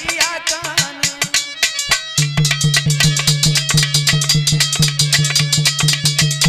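Aalha folk music: a harmonium with a fast, steady drum beat. A sung phrase with wavering pitch ends in the first second or so. From about two seconds in, the drumming grows denser over a deep beat repeating about three times a second.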